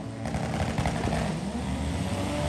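Drag race car at full throttle, running away down the quarter-mile strip after its launch, its engine and exhaust heard as a steady noise from back at the starting line.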